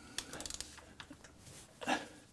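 Quick run of small metallic clicks, then a few more about a second in, from a wrench and crow's-foot tool working a tight valve adjuster back and forth on an early Mercedes 4.5 V8 to free it. A short noise follows near the end.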